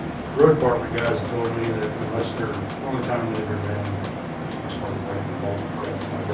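Indistinct conversational speech in a small room over a steady low hum.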